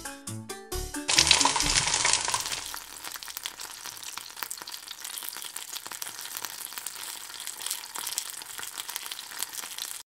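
Hot oil in a small metal pot frying a battered hot dog: about a second in it bursts into a loud sizzle as the battered sausage goes in, then settles into a steady, quieter crackling fry.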